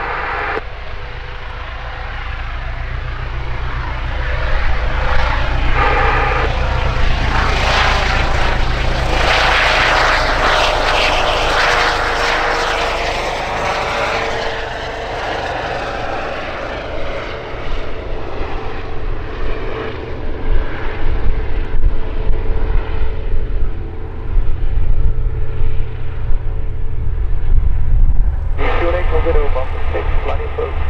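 Airbus Helicopters EC135 P2 (H135) helicopter with twin turboshaft engines, lifting off and climbing away: a steady turbine whine over the low beat of the rotors. The sound is loudest about ten seconds in. The whine then sinks slightly in pitch, and the rotor beat pulses more strongly as the helicopter passes overhead and away.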